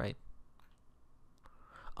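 A man says "right", then a quiet pause with a few faint, short clicks of a computer mouse scroll wheel as a web page is scrolled.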